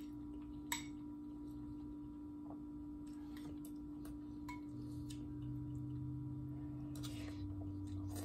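A metal spoon clinks against a glass bowl once, sharply, about a second in. Fainter spoon and chewing noises follow, over a steady electrical hum.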